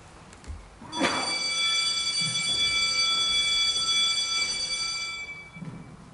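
A bell struck once about a second in, ringing with several clear, high metallic tones that slowly fade away over about four seconds.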